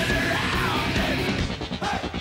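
Heavy metal song with yelled vocals over distorted guitars and drums. About two-thirds of the way through, the band switches to a run of rapid, chopped staccato hits.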